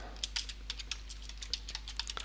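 Typing on a computer keyboard: a quick run of separate keystroke clicks as a name is keyed in.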